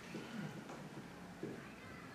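Faint, brief vocal sounds from a person in the room, twice: about half a second in and near a second and a half. Under them is a steady low room hum.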